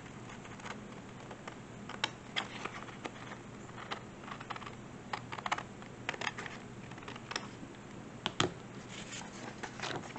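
Scrapbook paper being handled and cut with scissors: irregular rustles, light taps and snips, the sharpest one about eight seconds in.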